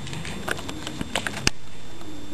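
A quick run of light, sharp taps and clicks of a hard object on a tabletop, as in chopping out a line of powder, with the loudest click about one and a half seconds in.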